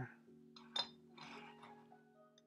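A single light clink of teaware being set down on the tea tray about a second in, followed by a brief soft rustle, over soft background music.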